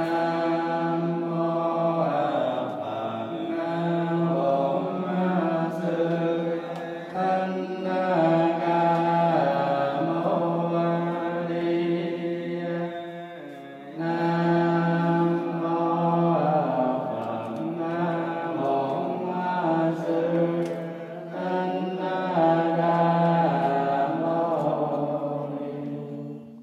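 Buddhist monks chanting together through a microphone: a slow, drawn-out chant on a steady pitch, with a short pause about halfway through and ending at the close.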